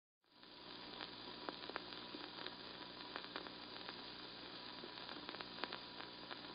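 Faint vinyl record surface noise: a steady hiss with scattered crackles and pops, fading in at the start.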